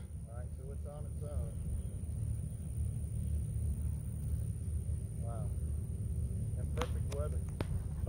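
Wind rumbling on the microphone across an open field, with a few faint distant voices and a thin steady high tone.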